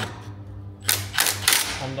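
Cordless impact wrench hammering an exhaust clamp nut tight on a stainless exhaust pipe, in three short bursts about a second in.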